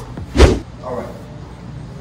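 One loud, short thud about half a second in as a man shifts his body on an exercise mat over a concrete floor, moving from lying to sitting up after a set of leg raises, followed by a brief breathy grunt.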